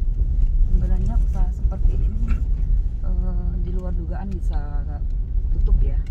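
Steady low rumble inside a car cabin as it drives slowly over a rough dirt road, tyres and engine running together. A person's voice is heard briefly in the middle.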